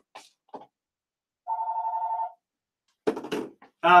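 An electronic telephone ringer sounding one short warbling ring, just under a second long, about a second and a half in, its two tones alternating rapidly.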